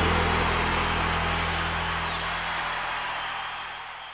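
The end of a song: a final low chord held and ringing out under a steady hiss, fading out.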